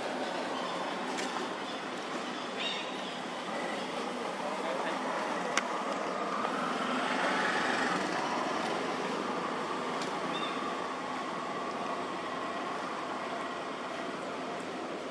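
Outdoor ambience with a distant motor vehicle passing, its hum growing and fading and loudest about seven or eight seconds in. A few sharp clicks and a couple of short chirps sound over it.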